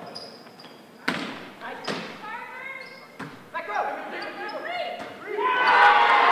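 A volleyball is struck twice, two sharp slaps about a second apart that echo around a gymnasium. They are followed by players' shouted calls, which swell into louder shouting and cheering near the end.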